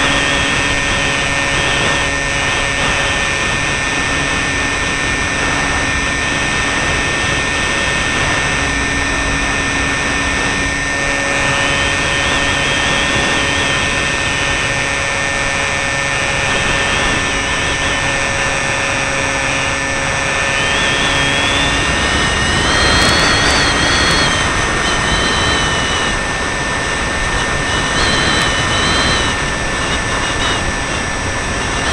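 Multiplex FunCub radio-controlled model plane heard from a camera on board: the electric motor and propeller whine over a steady rush of air. The whine wavers in pitch, rising and getting a little louder about three-quarters of the way through, then shifting again.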